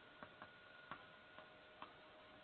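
Faint, irregular clicks of chalk tapping on a blackboard while writing, about five in two seconds, over a faint steady hum.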